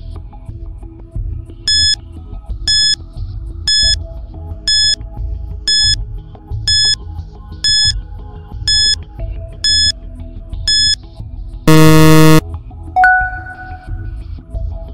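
Quiz countdown timer sound effects over soft background music: ten short beeps, one a second, counting down the time to answer, then a loud buzzer as time runs out, followed by a ringing chime as the answer is revealed.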